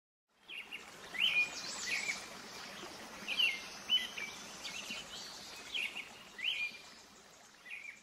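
Birds chirping over a steady outdoor hiss: short sweeping calls repeat every second or so, then the sound fades out near the end.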